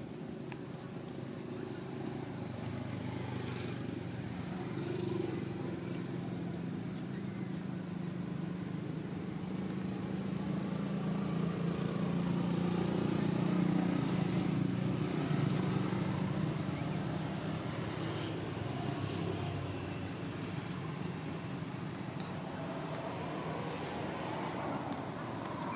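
A motor vehicle's engine running nearby as a steady low hum, growing louder to about halfway through, then easing off as it passes.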